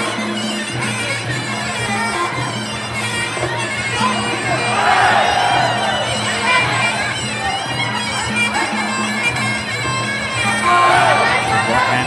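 Sarama, the traditional Muay Thai fight music: a reedy pi java oboe plays a winding, ornamented melody over a steady drum beat, with crowd noise underneath.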